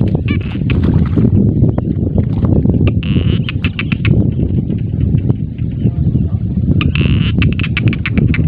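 Wind buffeting the microphone as a steady low rumble, with three short bursts of a high rasping, clicking sound: near the start, about three seconds in, and about seven seconds in.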